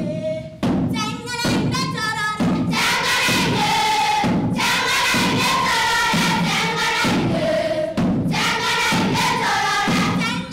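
Children's school choir singing an Abagusii folk song together in short rising and falling phrases, with repeated thuds beneath the voices.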